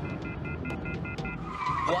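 A rapid run of short high electronic beeps, about seven a second, stopping about a second and a half in, over a low rumble; then a brief high wavering squeal near the end.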